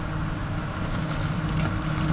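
Steady low machine hum of refrigerated display cases and store ventilation, with a faint even tone running through it.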